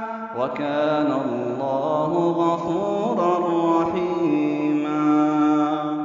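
A man's voice in melodic Quran recitation (tajwid), chanting the closing words of the verse, 'wa kana Allahu ghafuran rahima'. The voice enters about half a second in, winds through ornamented turns, then sustains one long note in the last part.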